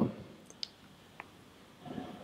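A few faint, sharp little clicks as the e-cigarette is handled and brought to the mouth, then the soft start of a draw on the atomizer near the end.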